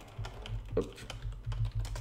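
Typing on a computer keyboard: a quick run of separate key clicks as a short shell command is typed, over a low steady hum.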